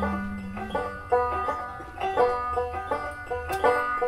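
Banjo picked solo in an instrumental passage of a folk song, a steady run of plucked notes.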